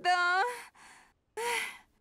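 A woman's voice sighing twice: a short voiced 'ah' at the start, then a breathier sigh about a second and a half in.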